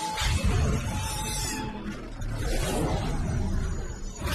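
Cartoon soundtrack: background music mixed with sound effects during a robot's transformation sequence.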